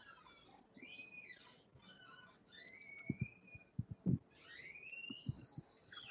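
Faint high whistling calls that rise and fall in pitch, heard about three times, with a few soft low knocks in between.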